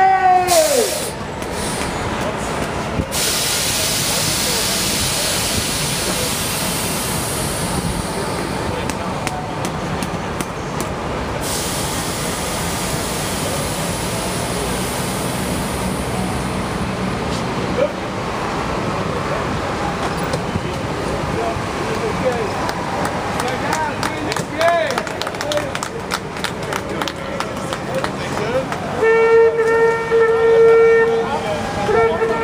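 A long hiss of released air from a stopped coach bus, loudest in the first few seconds and fading out about eleven seconds in, over the chatter of people nearby. Near the end a horn starts sounding one steady held note.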